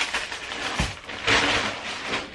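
Rustling and crinkling of plastic grocery packaging and shopping bags being handled while unpacking, with a short low thump just before a second in.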